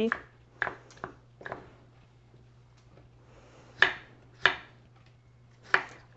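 Kitchen knife dicing radishes on a cutting board: about six separate knife strikes, spaced irregularly.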